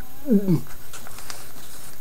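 A short vocal sound that glides steeply down in pitch, followed by a few faint rustles of newspaper being handled.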